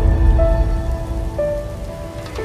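Channel logo intro music: a few held synth notes stepping between pitches over a deep rumbling bed that slowly fades.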